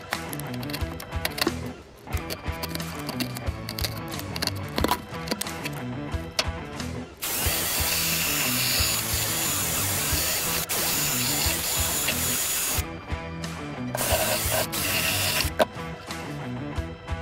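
Background music with a steady beat throughout. An electric drill runs at speed in a round hole cut in a plywood deck from about seven seconds in to about thirteen, then again briefly near the end, both times cutting off sharply.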